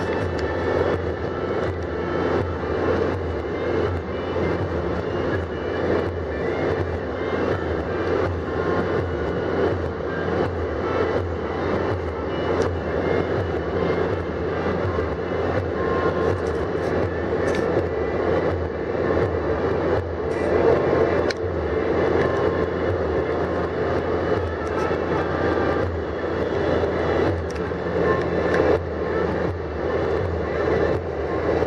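Steady drone of a car driving at highway speed, heard from inside the cabin: engine, tyre and wind noise running evenly throughout.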